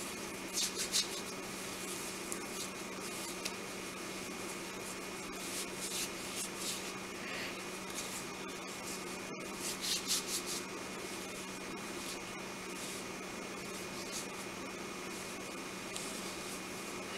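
Hands rubbing thick lotion into the skin: soft skin-on-skin rubbing, heard most about a second in and again around ten seconds in, over a steady low hum.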